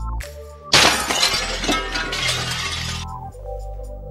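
Glass shattering: a sudden loud crash about a second in, with breaking and tinkling lasting about two seconds, over background music.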